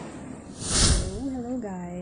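A short breathy hiss, a smooth rush of noise lasting well under a second, starts about half a second in. It is followed by a woman's voice starting to speak.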